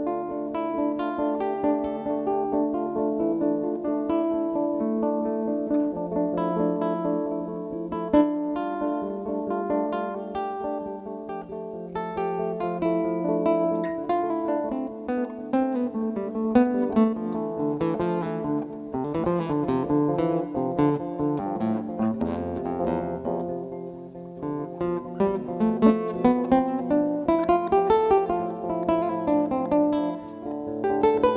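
Live band playing an instrumental passage of traditional Italian folk music: acoustic guitars picking quick plucked notes and strummed chords over a bass line, with no singing.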